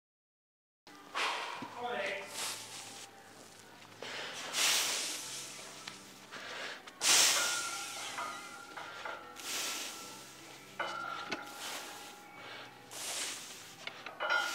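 A heavy lifter's forceful, hissing breaths, about seven sharp inhales and exhales a couple of seconds apart, as he braces before a heavy deadlift pull. The audio starts after about a second of silence.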